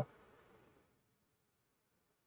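Near silence: a faint hiss trails off within the first second after speech stops, then nothing.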